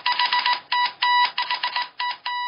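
News-segment sound effect: a high electronic beep keyed on and off in quick, irregular Morse-code-like pulses over rapid clicking.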